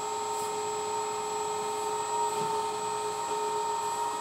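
Electric hydraulic pump of a LESU Komatsu PC360 RC excavator running with a steady high whine while the boom is worked.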